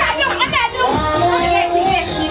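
Several children's voices talking and calling out over one another, with one voice holding a steady note through the last second.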